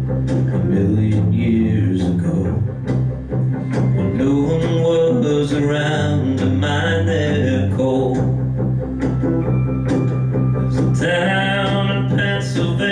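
Live country-folk band: acoustic guitar strumming over an electric bass line, with a man singing in places.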